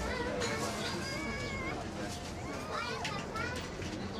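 Café background chatter: indistinct overlapping voices, with high children's voices calling and talking over the general murmur.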